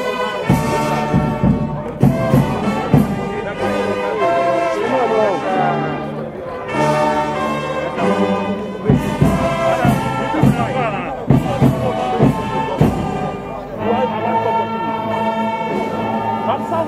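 A brass band playing, with many pitched horn lines and sharp beat strokes.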